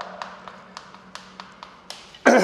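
Chalk tapping on a chalkboard in short, irregular strokes while writing, about eight taps in two seconds, over a faint steady hum.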